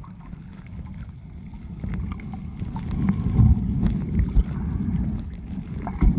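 Muffled sound of moving water picked up by a submerged camera: a low, noisy rumble with faint scattered clicks, swelling about two seconds in.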